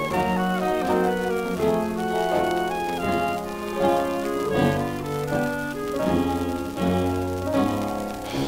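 A 1930s dance orchestra plays an instrumental passage of a sweet-style number, heard from a 1934 78 rpm record. Melody notes are held and change over a steady bass line.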